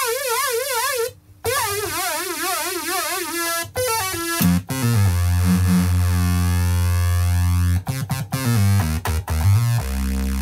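Moog Rogue monophonic analogue synthesizer being played. It opens on a note whose pitch wobbles quickly up and down, broken off for a moment about a second in. A quick run of falling notes follows, then deep bass notes held through the rest, with shorter notes near the end.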